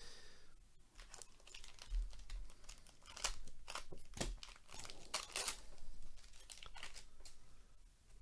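Foil wrapper of a 2022 Panini Prizm baseball trading card pack being torn open and crinkled: a run of short, irregular rips and crackles.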